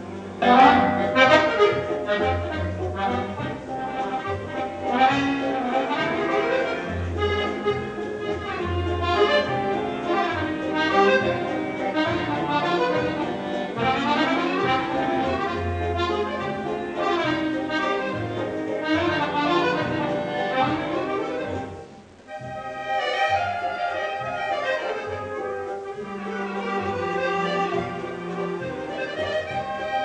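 Solo accordion playing with a full orchestra accompanying, recorded from the audience. The ensemble comes in loudly about half a second in, and the music breaks off for a moment about two-thirds of the way through before carrying on.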